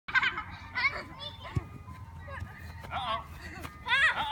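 Young children calling and shouting in high voices during a soccer game, in short bursts, with a single thump about one and a half seconds in.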